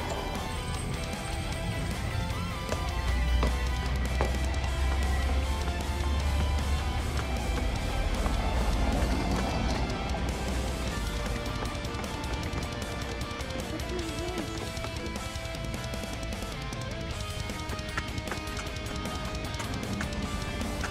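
Background music, with a heavy bass part strongest in the first few seconds.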